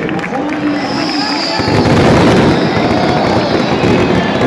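Fireworks crackling in a dense, rapid string over a football crowd singing; the crackle swells about a second and a half in.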